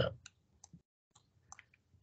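A handful of faint, scattered clicks from a computer pointing device as a number is hand-written onto an on-screen drawing canvas. The lecturer's voice trails off at the very start.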